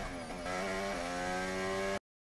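Onboard sound of a McLaren MCL60 Formula 1 car's 1.6-litre turbocharged hybrid V6 running at speed: the engine note drops in pitch as the driver lifts and downshifts, then climbs again about half a second in and holds steady.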